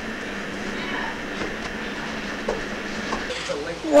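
Steady low hiss of room noise with faint murmured voices in the later part.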